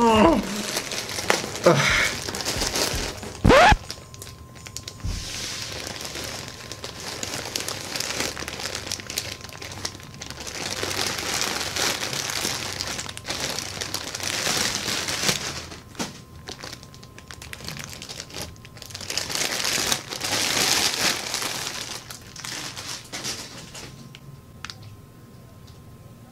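Plastic packaging crinkling and rustling in waves as a plastic mailer bag is torn open and the plastic wrap is pulled off a plush toy. There are a few louder brief sounds in the first four seconds.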